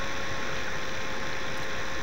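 Steady background hiss with a thin, steady hum: the recording's own noise floor, unchanging throughout.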